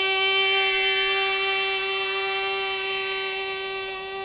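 A female Carnatic singer holding one long, steady note with no ornament. It fades slowly, as the closing held note of the song.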